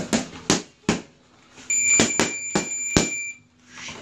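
Gloved punches smacking into focus mitts: three quick hits in the first second, then four more from about two seconds in. Over the later hits a steady high electronic beep sounds for about a second and a half.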